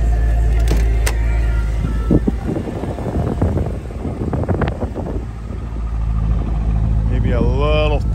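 The 2000 Corvette's 5.7-litre V8 idling steadily, with a few scattered knocks and rustles in the middle.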